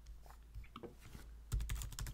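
Computer keyboard typing: a few light key clicks, then a quick, louder run of keystrokes starting about one and a half seconds in.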